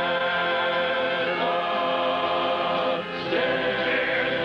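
A group of voices singing together in long held notes, as a chorus. The chord changes about a second and a half in, and the sound dips briefly about three seconds in before the singing carries on.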